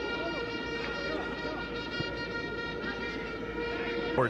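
Stadium crowd ambience with a steady horn note held over it.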